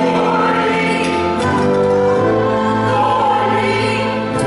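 A mixed group of adult and child voices singing a worship song together in held notes, with a live band accompanying.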